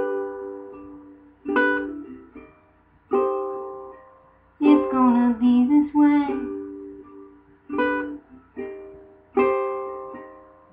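Chords strummed on an acoustic plucked-string instrument in a song's instrumental gap, one every second or so, each ringing out and fading before the next.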